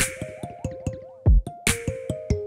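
Electronic drum and synth sounds triggered by an acoustic kit fitted with Evans Sensory Percussion sensors. A rhythmic groove of short pitched synth notes, some gliding in pitch, with a loud sharp crack at the start and again near the end and a deep thud between them.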